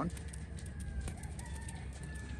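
Faint, distant bird calls, thin drawn-out tones, over a steady low rumble.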